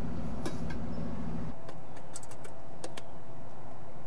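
Light metallic clicks and rattles from the toggle latch and cover of a stainless-steel landscape-lighting transformer box being handled, over steady background noise.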